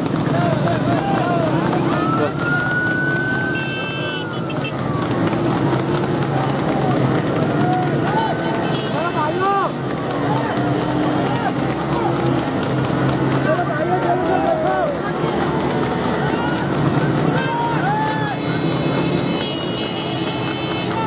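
Men shouting and whooping over a steady din of motorcycle and car engines on the road. A long, high held tone sounds about two seconds in.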